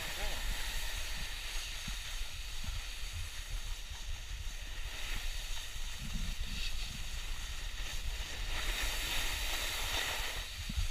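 Steady rushing hiss of wind on the microphone together with the scrape of a board sliding over snow during a run down the slope, with a low rumble throughout.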